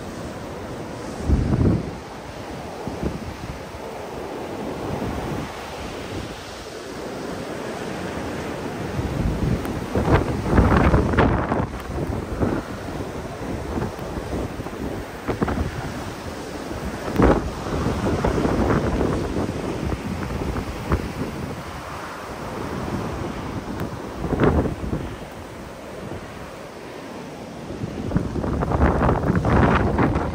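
Blizzard wind blowing in gusts, with repeated blasts of wind buffeting the microphone. The loudest come about ten seconds in and near the end.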